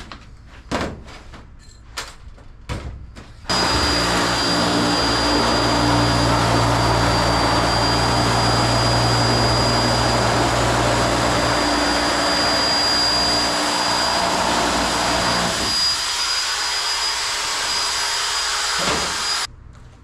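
Small handheld electric sheet-metal shear running and cutting through a sheet of thin metal: a loud, steady motor whine with a high tone, starting about three and a half seconds in after a few knocks of the sheet being handled, and stopping abruptly near the end.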